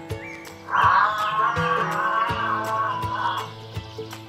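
Background music with plucked strings and a regular beat. About a second in, an animal call of about three seconds rises over it, louder than the music.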